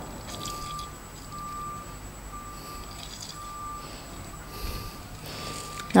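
A short, steady high electronic beep repeating about once a second, with soft handling noise underneath.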